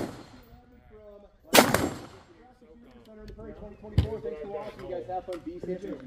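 A loud gunshot about one and a half seconds in, its report trailing off over half a second, then a fainter single shot about four seconds in.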